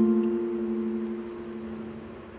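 Acoustic guitar chord from a ballad's karaoke backing-track intro, ringing out and slowly fading.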